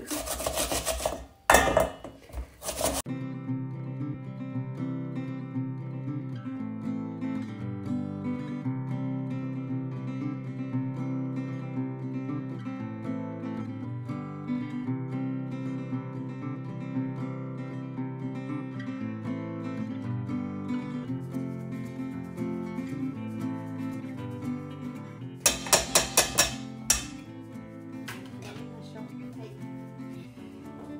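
An onion rasped against a bamboo oni-oroshi grater for the first few seconds, then background music for the rest, broken near the end by a short burst of loud rasping.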